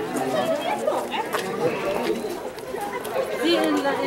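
Crowd chatter: several people talking at once, their voices overlapping so that no single voice stands out.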